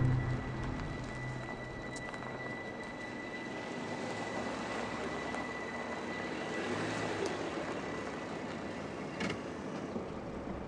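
Volvo sedan rolling slowly up a dirt and gravel driveway: steady tyre crunch with a low engine hum that swells as the car draws near, a faint steady high tone over most of it, and a few light clicks near the end.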